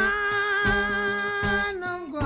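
Acoustic country blues: a long held lead note, wavering slightly, over regularly plucked acoustic guitar. The held note stops shortly before the end while the guitar carries on.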